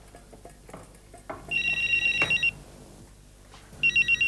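Desk telephone ringing with a high, warbling electronic trill: one ring about a second long, then a second ring starting near the end.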